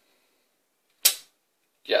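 A single sharp click about a second in, dying away quickly.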